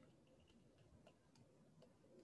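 Near silence: faint room tone with a few faint, scattered ticks.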